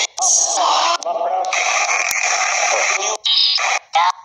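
Necrophonic ghost-box app playing through a phone speaker: a rapid, chopped stream of garbled voice-like fragments over hiss, cutting in and out in abrupt blocks. The app is going absolutely crazy.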